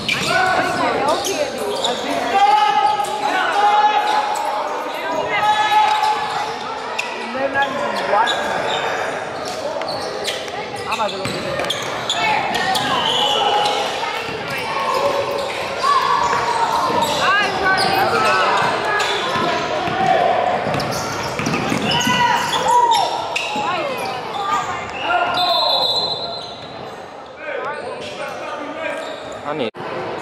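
Basketball dribbling and bouncing on a hardwood gym floor, with players and spectators calling out and talking throughout, all echoing in a large gym.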